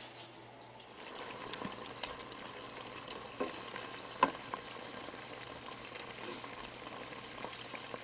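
A wooden spoon stirs flowers in a pot of hot melted coconut butter, with a steady faint sizzle and a few light knocks of the spoon against the pot.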